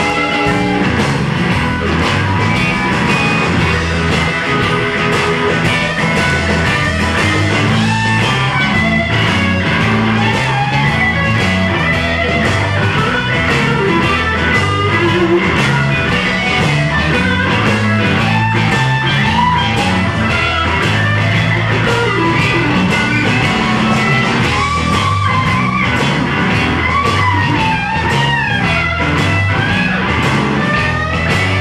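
Live blues-rock band playing: an electric guitar takes a solo with bent notes over steady bass and drums.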